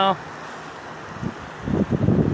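Wind buffeting the phone's microphone, a low rumbling that gusts louder near the end.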